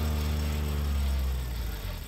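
John Deere Gator utility vehicle's engine running steadily while its spinner spreader casts fertilizer, then fading out near the end.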